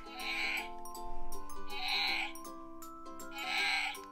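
Recorded black bear roar played from the sound module of a Wild Republic Wild Calls plush bear when it is squeezed, heard three times in short bursts, over light background music.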